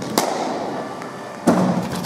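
Sharp knocks of a cricket ball in an echoing indoor net hall: a crack about a fifth of a second in, then a louder knock with a ringing tail about one and a half seconds in, and a lighter tap near the end.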